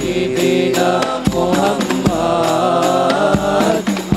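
Group of boys singing an Islamic devotional song (sholawat) in unison on long, gently winding held notes, with a few strokes on hand-held frame drums (rebana) accompanying them.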